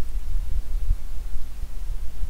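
Low, flickering hum and rumble of the recording's background noise, with no other sound.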